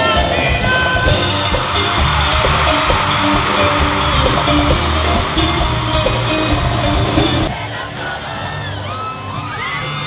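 Live bachata band playing loudly with a stadium crowd cheering over it. About seven and a half seconds in, the music stops and the crowd is left screaming and whooping.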